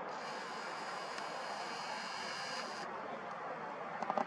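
Steady outdoor background noise, an even hiss with a faint high whine that stops a little under three seconds in.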